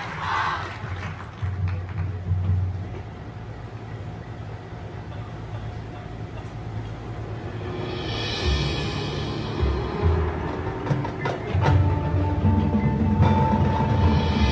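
A high school marching band's show opening: a low percussion rumble, a cymbal swell about eight seconds in, a few sharp percussion hits, then a held tone building toward the end.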